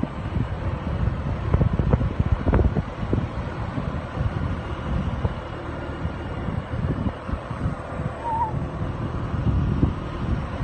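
Wind buffeting the microphone of a Rusi RFi 175 scooter while it is ridden, with the scooter's engine hum underneath. A short high chirp comes about eight seconds in.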